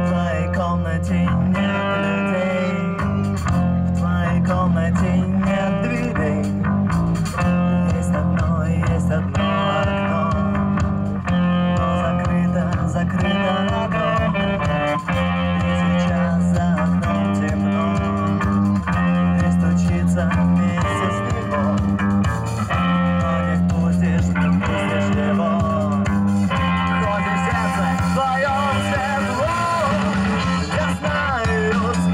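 Rock band playing live through PA speakers: electric guitars, bass guitar and a drum kit playing a song.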